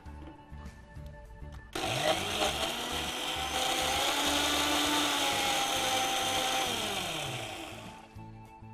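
Electric mixer grinder with a small stainless steel jar, switched on about two seconds in. It spins up, runs steadily crushing garlic, ginger and mint, then winds down near the end.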